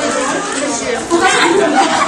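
Chatter of a group of teenagers talking over one another, no single voice clear.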